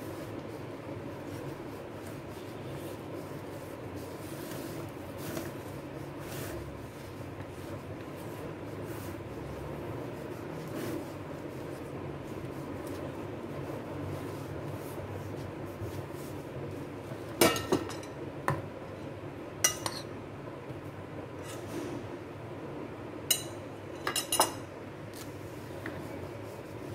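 A spoon stirs and folds flour gently into thick brownie batter in a plastic bowl, making a steady soft stirring sound. Sharp clicks of the spoon knocking the bowl come in two clusters, about two-thirds through and again near the end.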